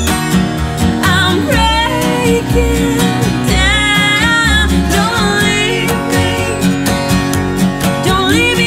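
Acoustic folk-pop performance: a woman's voice singing over strummed acoustic guitars and plucked upright bass notes.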